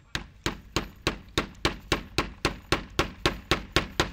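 Hammer driving a nail through a plastic piece into a plywood board: about fourteen quick, evenly spaced strikes, close to four a second.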